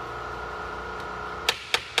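Three sharp hammer taps, about a quarter second apart, starting near the end, on the Mini's starter motor, which is stuck and is being knocked to free it. A steady low hum runs under them.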